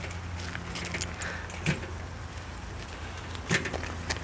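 Footsteps on gravel, a couple of distinct steps, over a steady low engine-like hum in the background.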